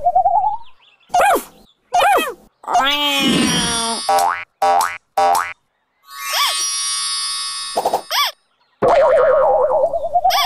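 Cartoon sound effects: a string of short springy boings with wobbling, arching pitch, broken by brief silences. A wavering boing that slides upward comes at the start and again near the end, and a held bright chord of steady tones comes in the middle.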